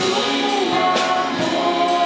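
Live band playing a gospel-style song, with women's voices singing over violin, acoustic guitar, electric bass and keyboard, and light percussion strokes.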